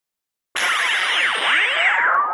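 Synthesized whooshing sound effect with many pitches sweeping up and down, starting suddenly about half a second in after silence: an electronic intro sting for the podcast.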